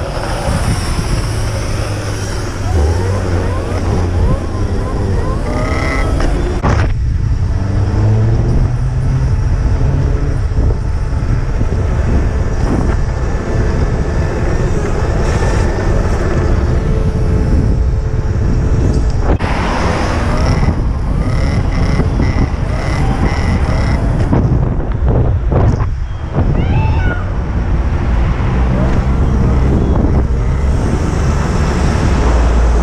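Wind rumbling on the microphone of an action camera on a moving rider in road traffic. Short rising and falling whines from electric dirt bike motors come through in the first few seconds and again near the end.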